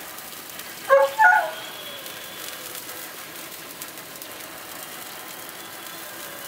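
Steady hiss and sizzle of a gas barbecue roasting a turkey on a rotisserie spit, with a brief two-part pitched sound about a second in.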